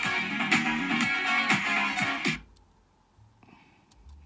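Internet radio music with a steady beat plays from the laptop, then cuts off about two-thirds of the way through as the station is switched, leaving near silence.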